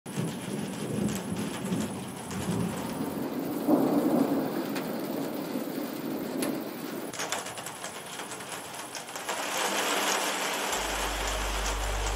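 A thunderstorm: steady rain with thunder rumbling, the loudest roll about four seconds in. The rain grows louder near the end, and a low steady hum comes in shortly before the end.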